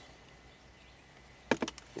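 Faint, steady background, then a quick run of three or four clicks about one and a half seconds in: a hand tapping and gripping a handheld scan-tool tablet.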